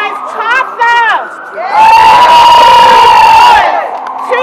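Rally crowd cheering and shouting together for about two seconds, in one loud held roar that starts a little under two seconds in, after a short stretch of a voice speaking.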